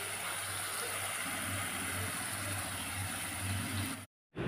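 Onion and spice masala sizzling in hot oil in a kadai, a steady hiss. Under it runs a low hum that swells and fades from about a second in.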